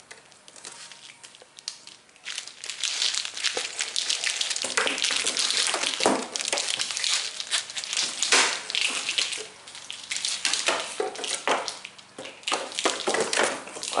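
Clear plastic packaging crinkling and crackling as a wiring harness is pulled out of its bag and unravelled by hand. It is quiet for the first couple of seconds, then the crinkling runs on almost without a break.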